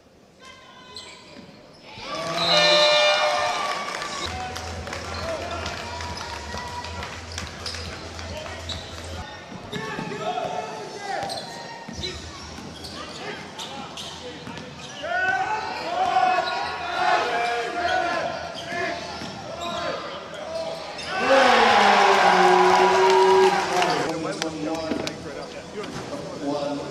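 Basketball game sound from the court: a ball bouncing and striking on hardwood, with scattered indistinct voices, and a louder burst of crowd noise and shouting near the end.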